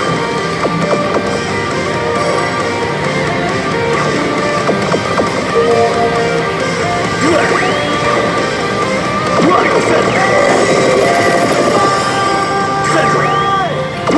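Pachislot machine music and electronic sound effects playing continuously, dense held notes with short rising glides over them.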